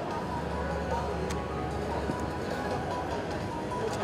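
Faint background music over steady, low hall noise, with one light click a little over a second in.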